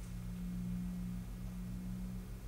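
Steady low electrical hum made of a few low tones together, the highest swelling slightly in the middle.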